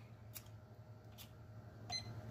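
Digital countdown timer giving a short, high beep near the end as its button is pressed to start it, after a couple of faint clicks.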